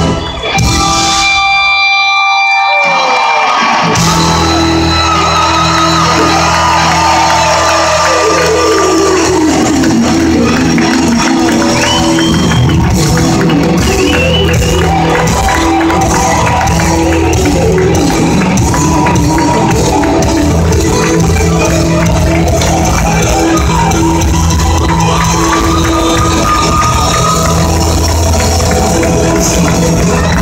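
Live band playing loud amplified music in a large hall, recorded from the audience. The bass and drums drop out for the first few seconds, leaving higher sustained tones, then the full band comes back in and plays on steadily.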